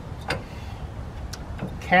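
A few light clicks from a cast-zinc Master Lock trailer coupler lock being handled on the trailer tongue, over a steady low background rumble.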